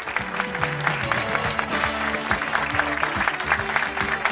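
Audience clapping over background music.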